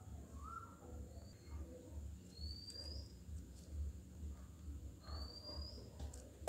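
Faint, short rising chirps of a small animal: a lower one about half a second in, then two higher ones a couple of seconds apart, over a low pulsing hum.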